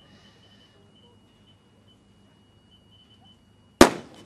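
Starting pistol fired once near the end, a single sharp crack that starts the race. Before it, a hushed quiet with a faint steady high tone.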